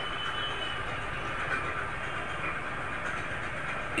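Steady street traffic noise from motorcycles and cars, an even rush with no single sound standing out.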